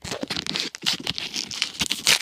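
Trading-card booster pack and cards being handled, with a quick run of irregular crinkling crackles and clicks.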